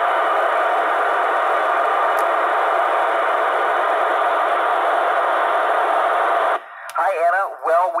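Loud, steady FM static hissing from a 2 m ham radio transceiver's speaker on the ISS downlink frequency, in the gap after the astronaut says "over". Near the end it cuts off suddenly and the astronaut's voice comes through the radio.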